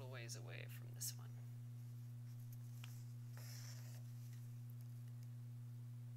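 Soft rasp of embroidery floss being drawn through fabric stretched in a hoop, with a sharp click about a second in. A brief murmur of voice opens the stretch, and a steady low hum runs underneath.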